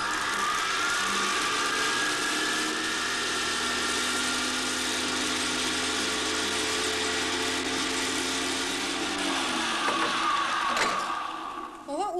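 Van de Graaff generator running: its motor and belt give a steady whine over a loud hiss, rising in pitch as it starts up and falling away over the last few seconds as it runs down. There is a single sharp click near the end.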